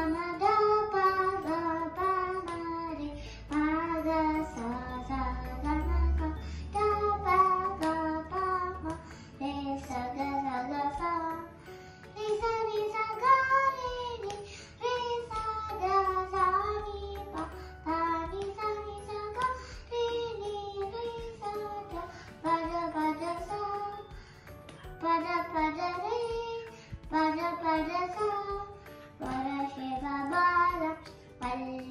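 A four-year-old girl singing a song solo into a microphone, her voice moving through melodic phrases with short pauses between them.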